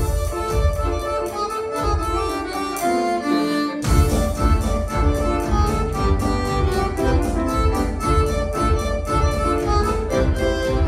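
A live band plays an instrumental with accordion, electric and acoustic guitars, electric bass and keyboard. The bass drops out for about two seconds, then the full band comes back in with a hit about four seconds in.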